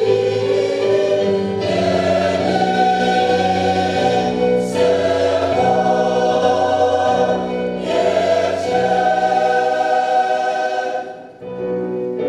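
Church choir of women and men singing together in held chords, with new phrases entering about a second and a half in and again near eight seconds; the phrase breaks off and the sound dips briefly about eleven seconds in.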